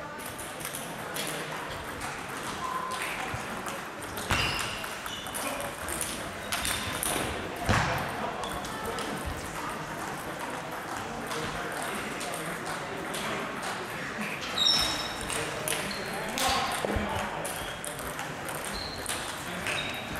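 Table tennis balls clicking irregularly off bats and tables, from several tables in play at once, over a murmur of voices in a sports hall.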